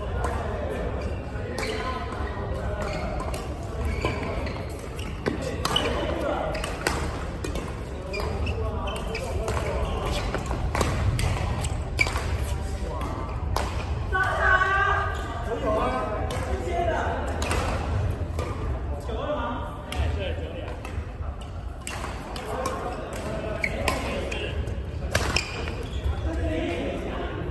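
Badminton rackets hitting a shuttlecock, sharp irregular clicks that echo in a large indoor hall, over a steady low hum and background voices from around the courts.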